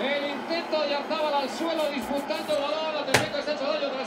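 A man's voice talking quietly in the background, with one sharp knock about three seconds in.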